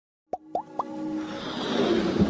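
Intro sound effects for an animated logo: three quick pops, each gliding upward in pitch, over a held synth tone, then a hissing whoosh that swells louder toward the end.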